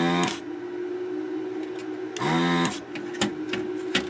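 Handheld vacuum desoldering gun's built-in pump, triggered twice to suck solder off a board joint: two short buzzes of about half a second each, at the start and about two seconds later, each rising in pitch as the pump spins up, over a steady low hum.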